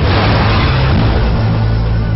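Action-film sound effects of a car crash: a sudden loud burst of noise at the start that dies away over about a second, over a low steady drone.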